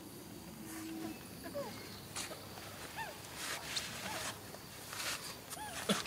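Infant long-tailed macaque giving several short, arching squeaks, with rustling of grass and dry leaves as it scampers about.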